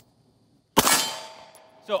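A single 9mm shot from a Beretta 92A1 pistol about three-quarters of a second in, followed by the metallic ring of a struck steel target dying away over about a second.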